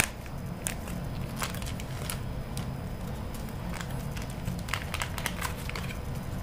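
Small plastic soup-powder sachet crinkling in scattered crackles as it is worked at to tear it open, over a low steady hum.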